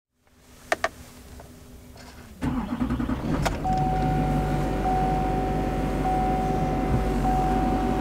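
Two clicks of the key in the ignition, then about two and a half seconds in a 2008 Chevrolet LMM Duramax 6.6-litre V8 turbodiesel fires up and settles into a steady idle. Over the idle a dashboard warning chime keeps sounding, a steady tone broken about once a second.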